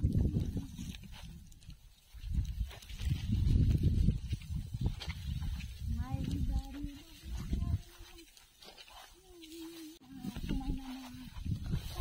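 Wind buffeting the microphone in heavy gusts, mixed with rustling of dry paddy stalks. From about halfway, a voice sounds a few long held notes at steady pitches.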